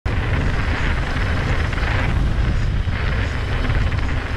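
Steady wind buffeting an action camera's microphone, with rumble from a hardtail mountain bike rolling over a dirt and gravel trail; the hiss swells and fades every second or so.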